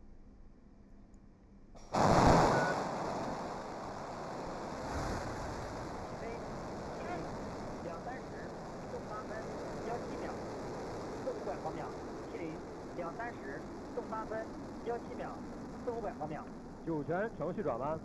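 Long March 2F rocket engines at liftoff: a sudden loud burst of noise about two seconds in, settling into a steady rumble.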